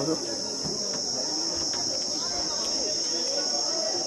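Steady, unbroken high-pitched drone of insects, with faint voices murmuring in the background.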